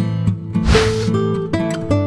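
Background music of strummed acoustic guitar with a steady rhythm, with a short hiss about halfway through.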